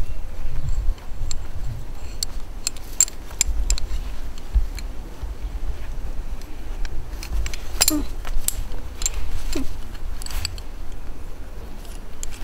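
Scattered metallic clinks and light jingling of a figure-eight descender and carabiner being handled as climbing rope is threaded through, over a low rumble.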